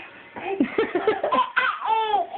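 Laughter in short bursts, a baby's high-pitched laugh among it, starting about half a second in.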